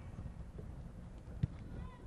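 Outdoor wind rumbling on the microphone, with a single thump of a soccer ball being kicked about one and a half seconds in.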